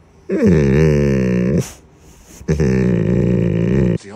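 Golden retriever making two long, low, wavering grumbling vocalizations, each over a second long, the pitch sliding down at the start of the first.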